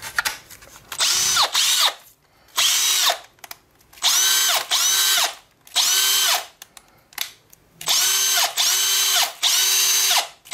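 Makita 18V cordless drill run unloaded in about six short trigger pulls, each spinning up with a rising whine, holding speed briefly and winding down. It is powered by an Ozito Power X-Change 18V battery through an adapter.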